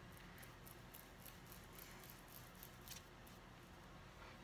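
Faint, light, irregular ticks and taps of a foam ink blending tool dabbing Distress Oxide ink onto cardstock, over near-silent room tone.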